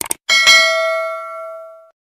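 Two quick mouse-style clicks, then a single bright bell ding that rings on and fades out over about a second and a half. This is the stock sound effect of a subscribe animation pressing the notification bell.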